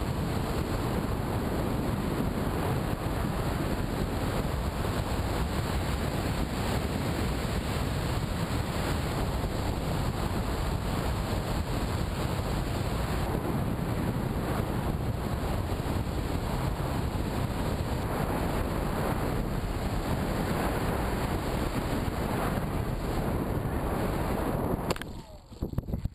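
Steady rushing wind noise on the microphone of a camera mounted on a flying RC plane, even and unbroken.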